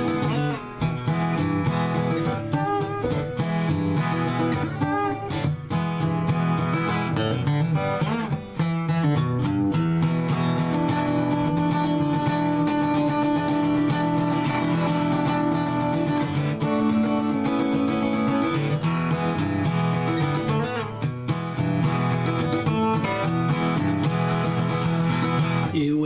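Gibson J-50 acoustic guitar played as a simple blues, with strummed chords and picked single-note licks. Some notes ring on for several seconds in the middle.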